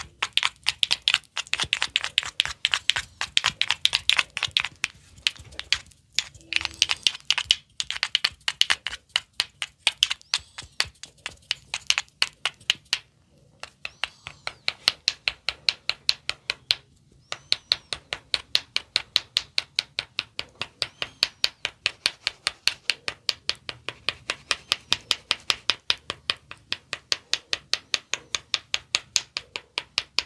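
Wooden ear-massage tools clicking and tapping against an oiled ear in a fast, even run of sharp clicks, about four a second, with a few short breaks.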